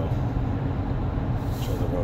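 Steady in-cab drone of a GMC Sierra 1500's 6.2L V8 (L86) and road noise while it pulls an 8000 lb travel trailer up a small grade, holding its gear without downshifting.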